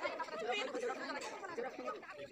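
Indistinct chatter: several voices talking over one another, with no single clear speaker.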